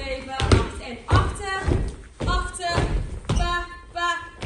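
Children's dance steps thudding on a studio floor in an uneven rhythm, about twice a second, with a voice chanting the beat over them in short bursts.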